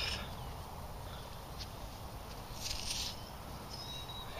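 Quiet outdoor field ambience: a steady low rumble, a brief high hiss about two and a half seconds in, and a short, faint high chirp near the end.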